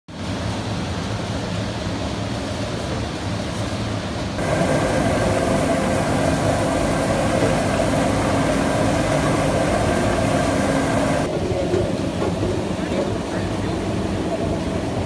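Potato processing machinery running steadily, with a low motor hum. Just after four seconds it turns louder and harsher as a brush-roller washing and peeling machine tumbles potatoes, then drops back a little past eleven seconds.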